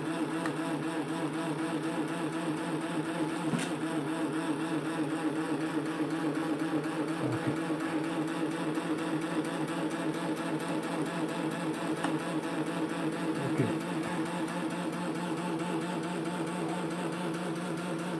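Homemade magnet-and-air-core-coil generator running, its rotor turning at around 1000 rpm: a steady, even mechanical hum and whir.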